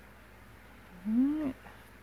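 A single short pitched call, about half a second long, about a second in: it rises and then falls away sharply.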